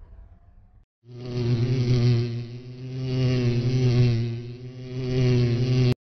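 Buzzing bee sound effect: a steady low buzz that swells and dips a few times, starting about a second in and cutting off abruptly just before the end.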